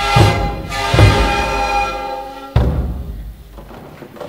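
Sikuris ensemble playing: many siku panpipes sound sustained chords over strokes of large bombo drums. The music ends with a last drum stroke about two and a half seconds in, which rings away.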